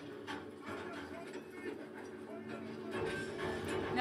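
Steady low hum from the exhibit's submarine sound effects, under faint murmuring voices; a deeper rumble joins about three seconds in.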